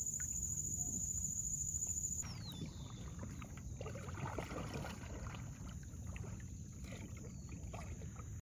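Kayak paddle strokes in calm water, the blade dipping and splashing irregularly, over a low rumble. For the first two seconds a steady high-pitched buzz is heard instead, cutting off suddenly.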